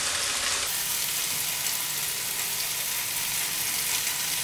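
Chopped tomatoes frying in oil in a nonstick pan: a steady sizzle.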